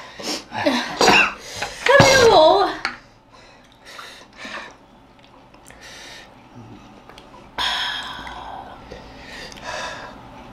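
Voices talking for the first few seconds, then quieter, with a few short breathy gasps and exhales.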